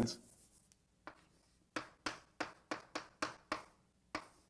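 A writing implement tapping and stroking on a writing surface as minus signs are written into an equation: a run of short, sharp taps at about three a second, starting about a second in.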